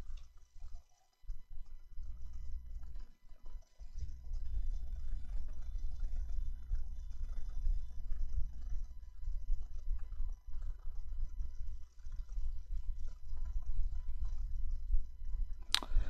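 Low, uneven rumble of microphone background noise with no speech, under faint steady high electrical tones.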